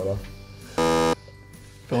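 A short electronic buzzer sound effect, one buzzy tone lasting about a third of a second, marking a skipped charades card.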